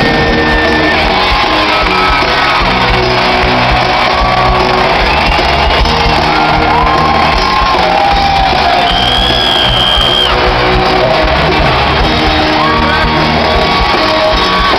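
Live hard rock band playing loud in an arena, recorded from among the audience, with fans shouting and whooping over the music. Sustained, bending guitar or vocal lines sit high above a dense, steady band sound.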